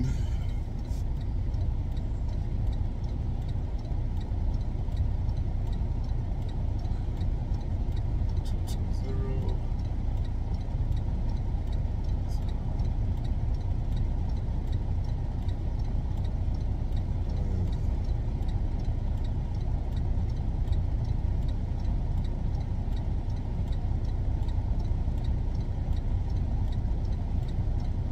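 Semi truck's diesel engine running with a steady low rumble, heard from inside the cab while the driver maneuvers to put the trailer in.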